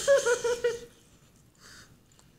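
A person laughing: a short run of pulsed laughs lasting under a second, then a brief breathy noise near the end.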